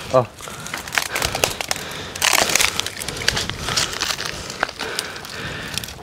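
Dry twigs and leaves crackling and snapping irregularly as people walk and push through dry scrub.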